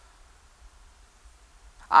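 A pause in a man's amplified speech: faint room tone with a low hum. His voice comes back right at the end.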